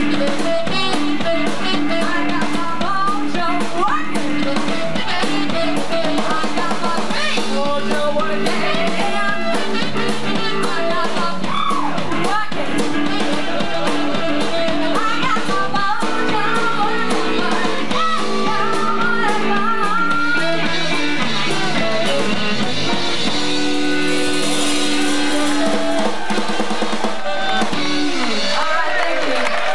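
Live blues band playing, with electric guitar, saxophone and drum kit under a woman's singing.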